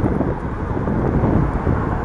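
Steady wind rushing over the microphone of a camera riding on an electric scooter at road speed, with road noise underneath.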